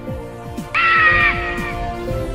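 A single loud eagle screech sound effect over intro music with a steady drum beat. The screech comes about three quarters of a second in, falls slightly in pitch over about half a second and trails off.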